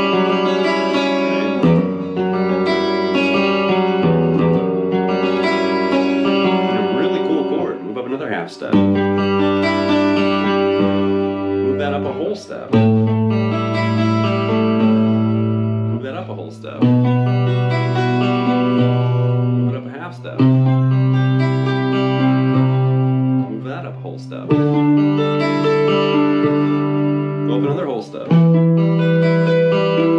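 Clean electric guitar playing a slow sequence of chords. Each chord is struck and left to ring for about four seconds before the next one, with the bass note shifting at each change.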